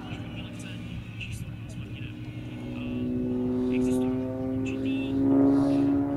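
Piston engine and propeller of an aerobatic monoplane flying overhead: a steady droning note that rises slightly in pitch and grows louder about halfway through.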